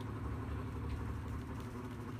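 A steady low mechanical hum, like a motor or engine running, with a faint tick about a second in.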